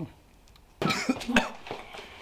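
A man coughing a few short times after a moment of near silence.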